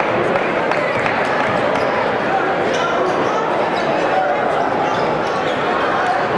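Basketball being dribbled on a hardwood gym floor, heard under the steady chatter of a crowd of spectators echoing in a large gymnasium.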